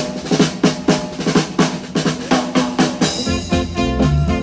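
Live drum kit beating out a steady song intro, about four drum hits a second. A bass line and the rest of the swing band come in near the end.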